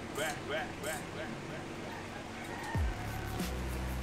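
A cloth rag rubbing along a bicycle rim bed as it is wiped clean, giving short squeaks about three a second in the first half. A low sound falls in pitch about three seconds in and is followed by a steady low hum.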